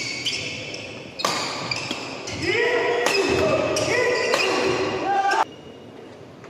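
Badminton doubles play on a wooden court: shoe soles squeaking in short, pitch-bending squeals and sharp racket hits on the shuttlecock, echoing in a large hall. The sound grows louder about a second in and cuts off suddenly near the end.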